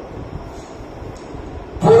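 Low, even background noise through a pause in a man's talk over a headset microphone, with no clear tones. His voice starts again sharply near the end.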